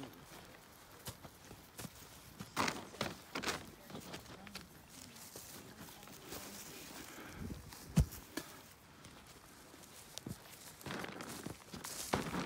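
Footsteps through grass, with scattered soft knocks and one short low thump about eight seconds in.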